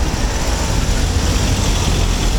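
Close-by road traffic: vehicle engines running, with a steady deep rumble and an even hiss of noise.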